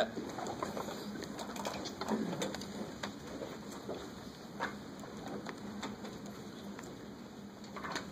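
Quiet classroom room tone with faint scattered clicks and taps and low, indistinct murmuring during a pause for calculation.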